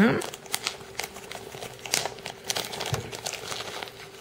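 Small clear plastic bag crinkling in irregular crackles as a bead necklace is pulled out of it by hand.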